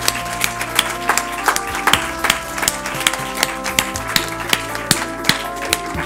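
A group of people applauding, many hand claps, over music that holds long, steady notes.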